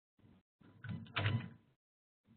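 Muffled computer keyboard typing and knocks on the desk, picked up by a microphone that cuts in and out between sounds. The loudest knock comes a little over a second in.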